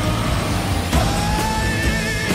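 Film trailer score and sound design: a deep, steady rumble under dense music. About a second in a tone slides upward, followed by a high wavering note.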